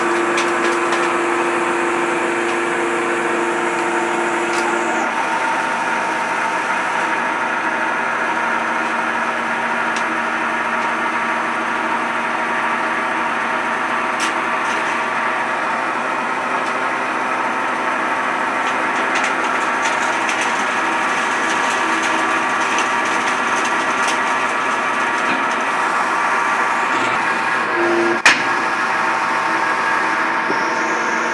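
Electric motor and hydraulic pump of a scrap-metal baling press running steadily with a humming whine while the press works old corrugated tin sheets. One sharp knock near the end.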